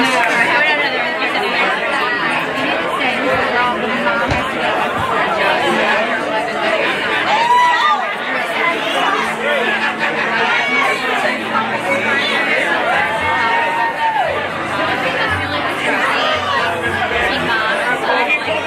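Crowd chatter: many voices talking at once in a large room, with two longer held tones standing out a little before and after the middle.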